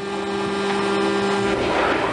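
Rotary ammunition magazine of a 76 mm naval gun mount running, a steady mechanical whine and hum as the drum turns and feeds the upright shells.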